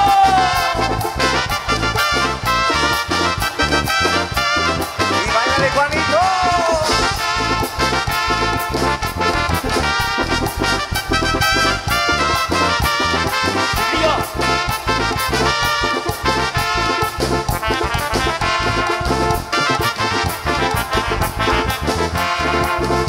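A tierra caliente band playing live, with electric bass, drum kit and keyboards in an instrumental passage over a steady dance beat.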